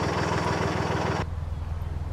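A narrowboat's diesel engine running with a low, even beat. A higher hiss over it stops abruptly just over a second in, leaving only the low engine beat.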